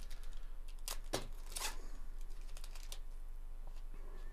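Foil trading-card pack being opened and the cards inside handled: a string of small crinkles and clicks, with a few louder crackles about a second in and again about half a second later.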